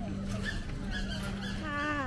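Market background of scattered voices over a steady low hum, with a pitched whine that falls in pitch near the end.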